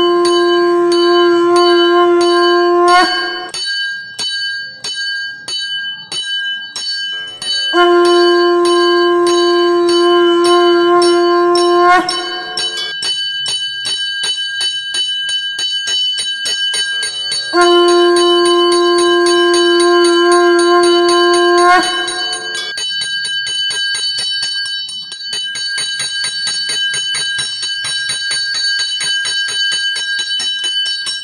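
Temple bells rung rapidly and continuously during a Shiva evening aarti. Three long conch-shell (shankh) blasts of about four seconds each sound over the bells, each rising slightly in pitch as it ends.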